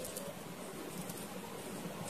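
Faint, steady room hiss with no distinct sound standing out from it.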